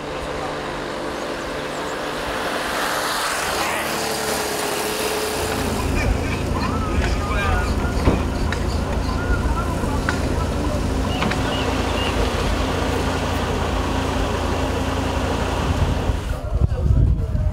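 Outdoor roadside ambience: a road vehicle passes over the first few seconds, swelling and fading, then a steady low rumble takes over.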